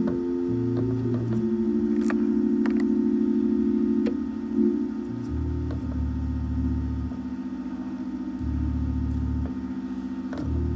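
Organ playing soft held chords, with low pedal bass notes entering and changing every second or two beneath them.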